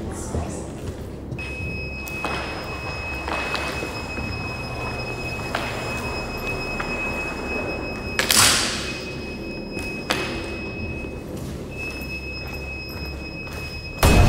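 A steady high electronic tone sounding over a low room rumble. Sharp clicks come every second or two, and a brief loud hiss is heard about eight seconds in. The tone drops out for a couple of seconds after about ten seconds and then comes back.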